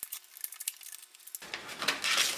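Cardboard-backed plastic blister pack of a RAM stick being torn open by hand: light crinkling clicks, then a louder rustling tear about a second and a half in.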